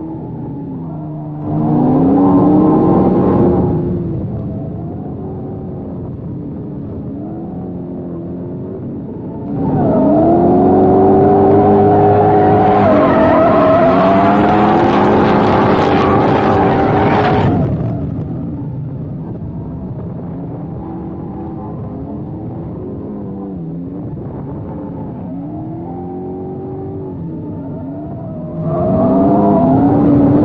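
Drift car engine revving hard in bursts while the car slides, heard from a roof-mounted camera. There is a short burst about two seconds in, a long one of about eight seconds from about ten seconds in with tyre hiss on top, and another near the end. Between the bursts the engine drops back to a lower, steadier note.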